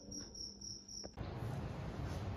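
A cricket chirping faintly in regular high-pitched pulses, about four a second, which cuts off abruptly a little over a second in; after that only a steady low room hum.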